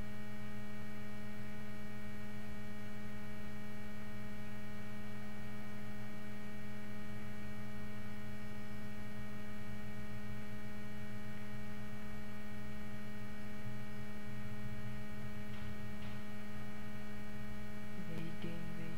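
Steady electrical mains hum: a low buzz with a stack of steady higher overtones, unchanging in level.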